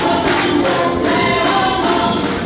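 Many voices singing together over music.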